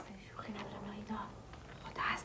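Quiet whispering between two women.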